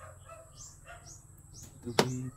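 A small bird chirping over and over, short falling chirps about three or four a second, over a steady low hum from an electric fan. A single sharp click comes at the very end.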